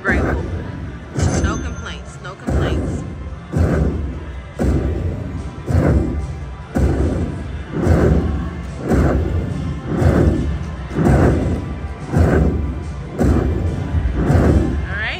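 Ultimate Fire Link By the Bay slot machine tallying a Fire Link feature win. A booming hit comes about once a second as each fireball's credit value is added to the win meter, over the game's music.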